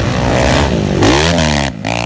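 Motocross dirt bike engines running hard on the track. The revs drop and then climb again about a second in, and the engine note steadies near the end.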